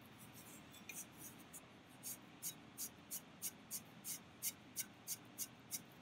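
Damp sponge rubbed in short, quick strokes along the rim of a clay pot, wiping off excess glaze: a faint scratchy swish about three times a second.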